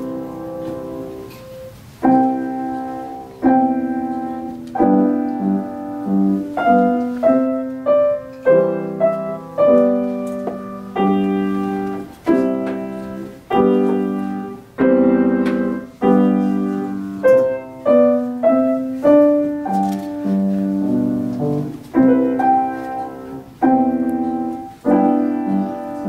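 Steinway & Sons grand piano played four hands: a held chord, then a new chord struck about every second, each ringing and fading before the next.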